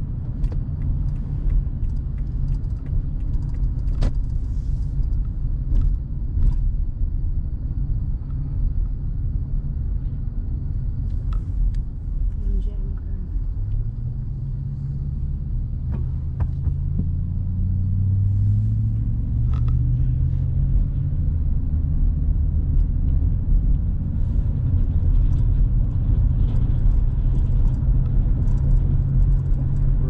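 Low, steady rumble of a car's engine and tyres heard from inside the cabin with the windows up, with a few light clicks. About halfway through, the engine note rises as the car speeds up.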